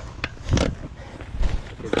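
A muddy knobby dirt-bike tire and wheel handled by hand: a sharp click, then a short thump with a rustle about half a second in, and another dull thump later. A man's voice starts just at the end.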